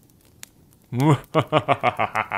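A man laughing: after a brief quiet pause, a quick run of short, evenly spaced 'ha' bursts starts about a second in.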